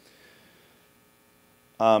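Near silence with a faint steady electrical hum, then a man says "um" near the end.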